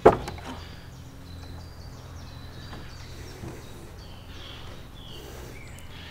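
An old wooden stable door knocks sharply once as its upper half is pulled open, followed by steady outdoor background with a few faint bird chirps.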